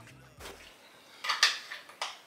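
A few sharp clinks of kitchen dishware, loudest about a second and a half in, while background music tails off at the start.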